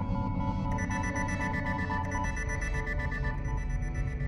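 Live-coded electronic music: a dense, steady low drone under sustained synth tones, with a fast repeating high beeping pattern that comes in about a second in.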